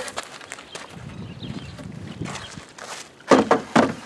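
Footsteps on dirt and gravel while two-by-four boards are carried and handled. Near the end comes a cluster of loud, sharp knocks of lumber.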